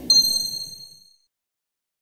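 A single bright, high-pitched ding sound effect accompanying a logo reveal, struck once just after the start and ringing out to nothing within about a second, over the fading tail of background music.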